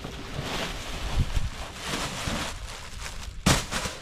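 Silver foil packing wrap rustling and crinkling as it is pulled out of a cardboard box, with a sharper, louder crackle about three and a half seconds in.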